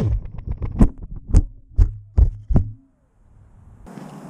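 An FPV quadcopter crashing: a run of about five sharp knocks over two seconds over a low motor hum, which cuts off, then near silence.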